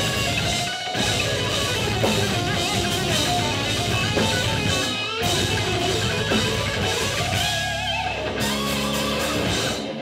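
Metal band playing live: distorted electric guitar riffing over a drum kit, with brief stops about one and five seconds in.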